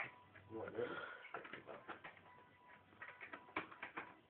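Quiet room sound with faint, indistinct murmuring voices in the first half and a few small clicks and rustles later, over a faint steady high whine.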